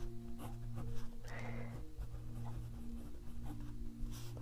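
Medium nib of a Pilot Tank fountain pen writing on paper on a clipboard: faint, short strokes of the nib on the page.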